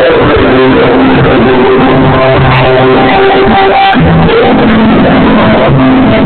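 Live band playing, recorded very loud, with held sustained notes and chord changes over a bass line.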